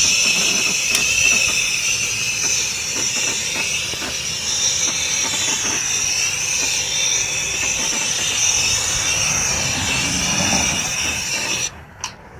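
Compressed air hissing steadily from a Harbor Freight electrostatic powder coating gun as it sprays powder, cutting off suddenly near the end.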